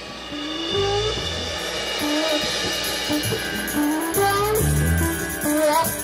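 Blues rock music: a guitar plays a melodic line of sliding, bending notes over bass and drums.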